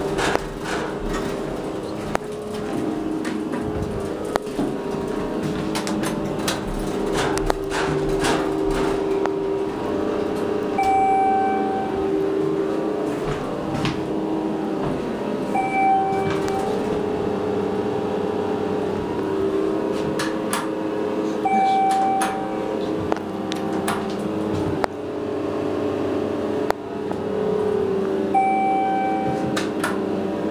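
Schindler elevator in motion: a steady motor hum inside the cab, with a short electronic beep repeating every five or six seconds, typical of the car's floor-passing chime. A few clicks and knocks come in the first several seconds.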